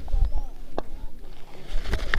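Faint voices of players calling out in the distance, over a steady low wind rumble on the microphone, with two short clicks.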